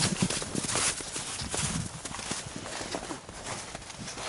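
Footsteps in snow: a run of crunching steps while walking downhill on a snow slope.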